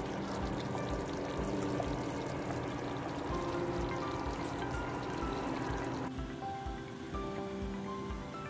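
Background music with a steady beat, over thick tomato sauce bubbling and popping as it boils in a stainless steel pot. The bubbling drops out about six seconds in, leaving the music.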